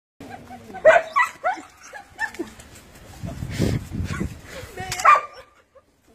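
A dog barking and yipping in a string of short, sharp calls, with a stretch of low, rough noise in the middle.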